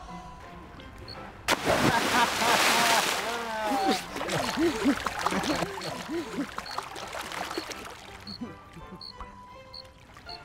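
A loud splash about a second and a half in as someone jumps from a balcony into a swimming pool, the water churning for a second or so. Voices call out afterwards, and soft music comes in near the end.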